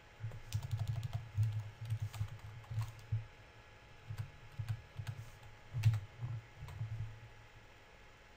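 Typing on a computer keyboard: irregular runs of key clicks with a dull knock under each stroke. It stops about a second before the end.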